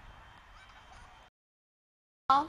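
Faint outdoor ambience with a few short high chirps, cutting off to dead silence a little over a second in.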